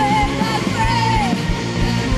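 Live worship band playing an upbeat song with a steady drum beat, the singers and crowd singing a wordless "na na na" refrain, with shouting voices mixed in.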